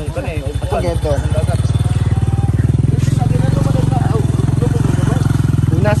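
Motorcycle engine running steadily close by, a fast even pulsing, with people talking over it in the first second or so.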